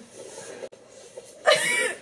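A short, loud vocal burst from a person about one and a half seconds in, after a quieter stretch.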